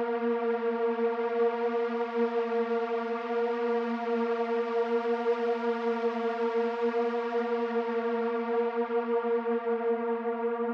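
Background music: a synthesizer drone holding one steady low note with its overtones, without a beat.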